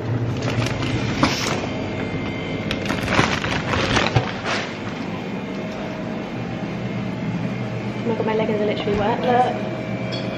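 Clothing and hair rubbing on a phone's microphone, in short rustles and clicks during the first few seconds, over a steady low hum. A brief soft voice comes near the end.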